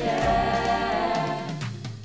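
Group of voices holding a long sung note over a recorded pop backing track, the bass and drum beat dropping away in the second half.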